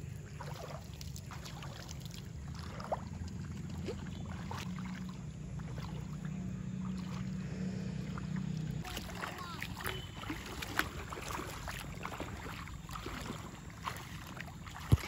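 Bare feet wading through shallow water, with scattered splashes and sloshing. A low wind rumble on the microphone eases off about nine seconds in.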